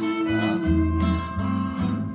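Old pre-1975 Vietnamese song with guitar, playing back from a reel-to-reel tape on a Pioneer RT-1020H deck through a stereo system. The music runs on steadily with held bass notes.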